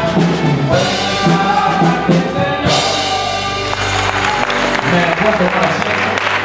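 Church worship band of singing with acoustic and electric guitars, closing a song on held chords; about two-thirds of the way in, clapping starts up under the last ringing chord.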